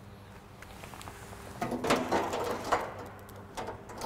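Handling noise at a metal control cabinet: a run of clattering and scraping starting about a second and a half in and lasting over a second, then a few lighter knocks, over a steady low electrical hum.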